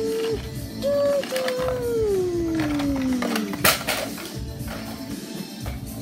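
A child's voice making a falling-missile sound effect: short held humming notes, then a long whistle-like note sliding steadily down in pitch over about two seconds. A sharp thump follows about halfway through.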